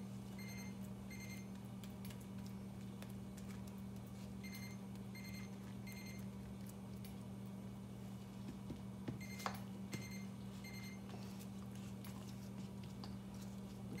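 Electronic alert beeping: sets of three short high beeps, repeating about every five seconds, over a steady low electrical hum.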